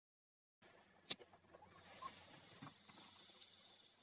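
After a silent start, a single sharp click, then a steady faint hiss as someone draws in through a small pipe held in the mouth.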